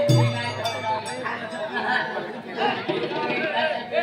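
Stage band music with sustained notes and percussion breaks off about half a second in, followed by voices talking and chatter.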